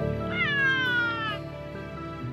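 A domestic cat caught in a wire fence gives one drawn-out, distressed meow that falls slowly in pitch, over soft background music.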